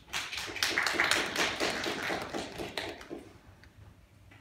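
Small audience applauding, a dense run of hand claps that fades out about three seconds in.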